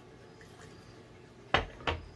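A glass bottle set down on a glass table top: two sharp knocks close together near the end, after a quiet stretch.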